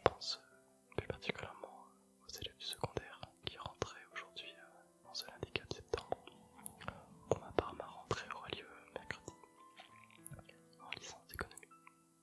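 A man whispering in French close into a microphone, reading aloud, with many crisp mouth clicks between the breathy words. Soft background music with long held notes runs underneath.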